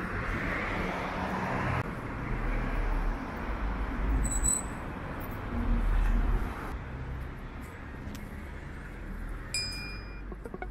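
Road traffic on a city street, with a steady noise of passing cars and a low rumble that swells twice in the middle. Near the end, a short electronic chime with clicks.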